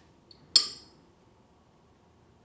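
A single sharp clink with a short, high ringing tail, with a faint tick just before it: a paintbrush knocking against a hard container.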